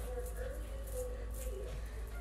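Quiet handling sounds: faint rustling of a small dog's fabric shirt being pulled on, under a faint murmured voice and steady low room hum.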